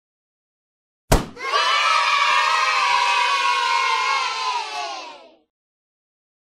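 A single sharp balloon pop about a second in, then a crowd of children shouting and cheering for about four seconds, fading out.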